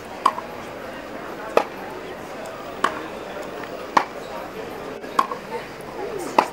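Tennis rackets striking a tennis ball in a practice rally: five sharp hits about 1.2 seconds apart, some with a short ring of the strings.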